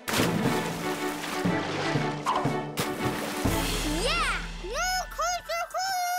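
Cartoon sound effects over background music: a sudden large water splash with rushing noise for about three seconds, then a character's wordless voice making several short rising-and-falling hums.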